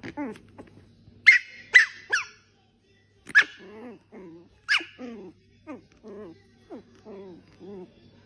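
A Chihuahua and a small puppy vocalizing in play: about five sharp, high yips in the first five seconds, followed by a run of short, lower grumbling sounds, one or two a second.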